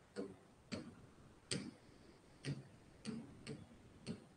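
Six faint, irregularly spaced taps of a hand on the screen of an interactive display board.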